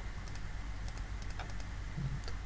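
A few light clicks of computer keyboard keys, bunched in the second half, stepping a game record forward move by move, over a low steady hum.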